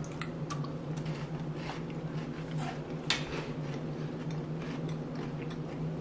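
Two people chewing a chocolate-coated flaky wafer roll: scattered small crunches and clicks. A steady low hum runs underneath.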